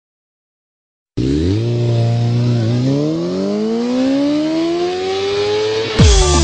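A car engine that starts about a second in, holds a steady note briefly, then rises smoothly in pitch as it revs up and accelerates in one long pull.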